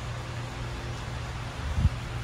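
Steady low background hum and hiss with no clear single source, and a brief low thump near the end.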